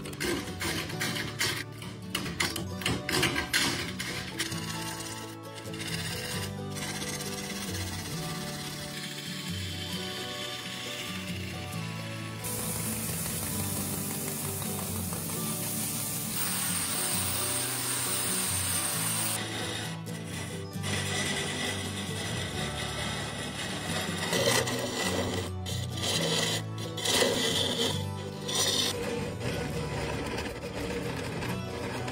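Background music over a wood lathe turning a large bowl blank while a hand-held gouge cuts the spinning wood. The cutting noise is strongest in the middle.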